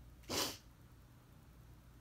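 A single short, sharp sneeze about a third of a second in.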